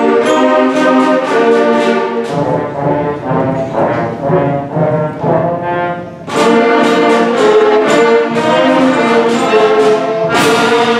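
Sixth-grade school concert band playing a march on a steady beat, brass and percussion to the fore. About two seconds in it drops to a softer, lower passage, and the full band comes back loud at about six seconds.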